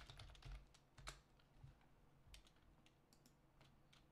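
Faint computer keyboard typing: a quick run of keystrokes, then a few scattered key presses.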